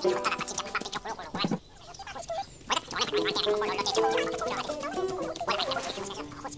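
Light cartoon background music of short, bouncy held notes, with a run of quick, irregular comic sound effects over it. The sound thins out for about a second near the two-second mark.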